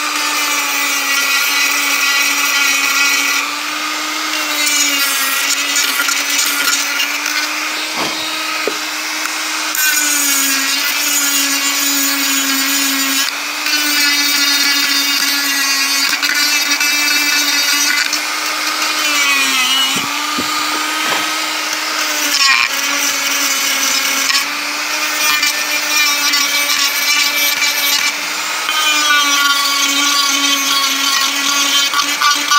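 Handheld rotary tool with a small sanding drum running at high speed while sanding a wooden carving smooth. Its steady whine sags in pitch several times as the drum is pressed into the wood and climbs back as the pressure eases.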